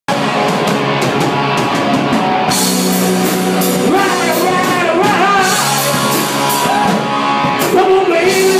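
Live rock band playing loud: electric bass and electric guitars over drums, with the cymbals getting brighter about two and a half seconds in.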